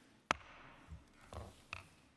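A single sharp strike of a wooden gavel on the dais, adjourning the hearing, followed by a few faint knocks and rustles.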